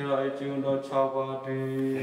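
A man's voice chanting a liturgical text on a nearly steady pitch, in short held phrases.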